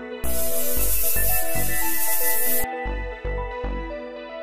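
Perfume spray hissing in one long burst of about two and a half seconds, over background music with a steady beat.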